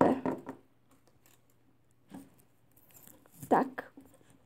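Faint handling sounds of thin beading wire being pulled tight through a few small beads: a few soft clicks at the start, then near quiet. A woman says a short word near the end.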